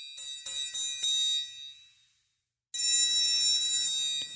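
Sampled orchestral triangle from the EastWest Symphonic Orchestra library's Triangle 2 patch, a little beefier and bigger than a light, dainty triangle. Several quick strikes in the first second ring away to silence by about two seconds, then a single strike rings out again near the end.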